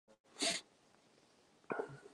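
A short, sharp breath close to the microphone about half a second in, then a brief low vocal sound from the same man near the end.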